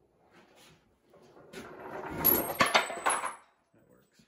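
A homemade UTV flatbed dump bed, white oak boards in an angle-iron frame, being tipped up by hand on its pivot pins: a building scrape and rattle, then several sharp metallic clanks with a brief high metal ring about two to three seconds in.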